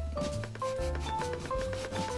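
A kitchen knife sawing down through a loaf of Japanese white bread (shokupan), a run of soft rasping strokes on the crust and crumb. Background music with a melody and bass plays over it.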